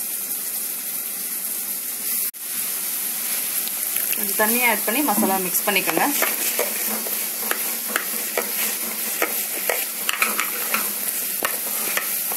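Food sizzling in hot oil in a pan while it is stirred and scraped with a spoon: a steady hiss broken by frequent short scraping clicks. The sound drops out for an instant about two seconds in.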